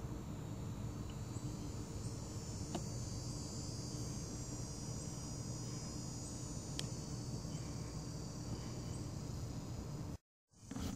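Steady high-pitched insect chorus trilling over a low rumble, with two short ticks about three and seven seconds in.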